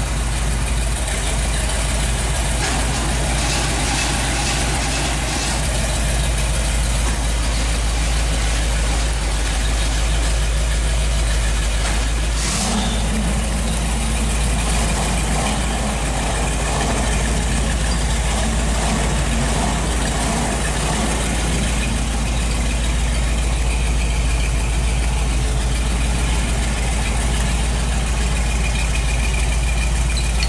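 Car engine idling steadily at an even, unchanging level.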